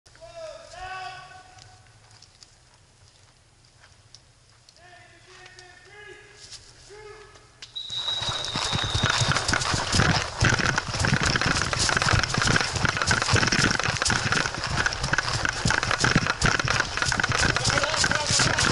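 Distant voices calling out, then about eight seconds in a run of fast footsteps crunching and crackling through dry fallen leaves that goes on loud and dense.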